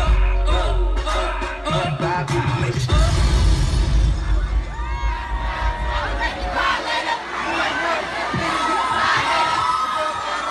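Concert crowd cheering and screaming over loud, bass-heavy hip hop music. The bass-heavy music cuts out about six and a half seconds in, leaving only the crowd's cheers and high-pitched screams.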